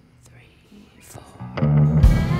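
A quiet break in a live country-Americana band performance with only faint held notes, then guitar strumming comes in about one and a half seconds in and grows quickly louder.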